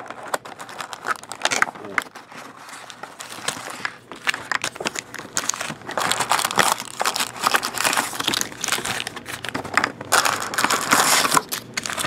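Foil trading-card packs and cellophane wrap crinkling as a hobby box is opened and its packs are handled, with light cardboard rustles and clicks. The crinkling comes in irregular spells and is loudest about six seconds in and again near the end.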